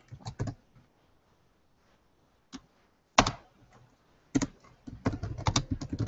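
Typing on a computer keyboard: a few keystrokes at the start, a pause broken by a couple of single keystrokes, then a quick run of keystrokes over the last second and a half.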